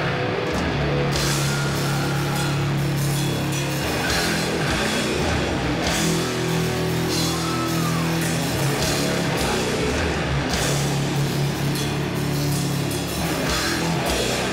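A doom metal band playing live: heavily distorted guitars and bass hold long, low riff notes over drums. Cymbal crashes come in about a second in. There are no vocals.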